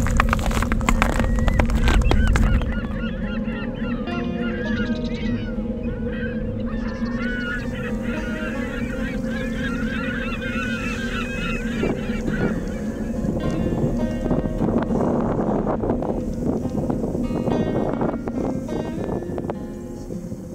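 A flock of waterbirds calling, many overlapping calls, over a steady sustained music tone. A loud low rumble with some clatter comes in the first couple of seconds, and the calls thin out in the second half.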